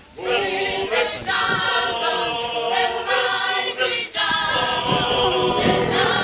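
Choral music: a choir singing held chords in phrases, with a brief break just after the start and another about four seconds in.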